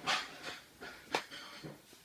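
A person's breathing with effort: short hissy breaths while pulling sticky putty off a hand, with one sharp click about a second in.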